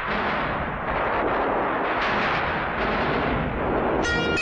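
Heavy rain falling steadily, an even hiss with a low rumble underneath, as a film sound effect.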